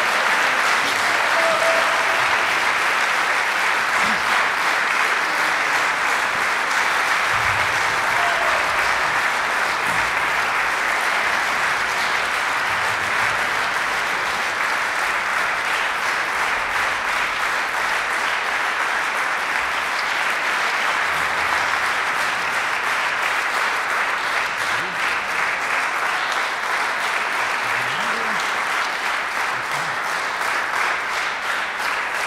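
Concert audience applauding, a dense and steady clapping that holds without a break.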